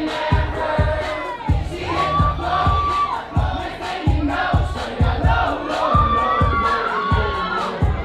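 Loud dance music with a steady kick-drum beat a little over two per second, under a crowd of teenagers shouting and singing along.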